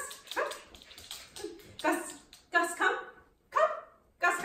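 A Pomeranian-husky mix (Pomsky) barking and yipping in a series of short calls, about five or six, with gaps between them.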